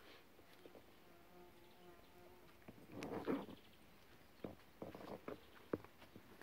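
Faint garden sounds: a flying insect buzzing with a low steady hum for about a second and a half near the start, a brief louder sound about three seconds in, and a few light taps near the end.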